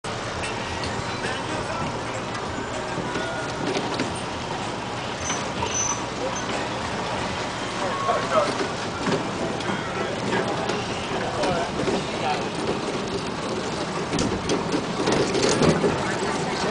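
Steady street and road noise heard from a moving pedal cycle rickshaw, with people's voices talking throughout.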